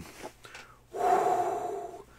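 A man's single heavy breath, about a second long, starting about a second in.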